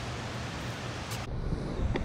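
Steady rushing outdoor noise with an uneven low rumble, turning duller about a second in.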